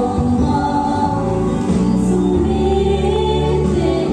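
A young woman singing a gospel song into a microphone over sustained instrumental accompaniment.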